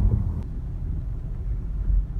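Low, steady rumble of a moving car heard from inside the cabin: engine and road noise, with a faint click about half a second in.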